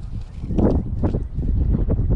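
Wind buffeting the microphone, a steady low rumble, with a few soft knocks and rustles near the middle.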